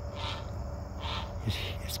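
A young bird perched in a tree giving repeated short calls, a fledgling calling to its parent, with crickets chirping steadily behind.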